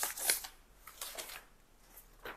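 Paper rustling as a sheet is drawn out of a large kraft-paper envelope and unfolded, loudest in the first half-second with a softer rustle about a second in.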